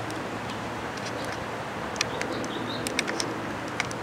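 Quiet outdoor ambience: a steady faint hiss with faint bird calls and a scattered handful of light clicks, a few of them around the middle and near the end.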